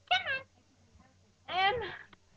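Lhasa Apso puppy giving one short, high-pitched whining cry just after the start, its pitch falling.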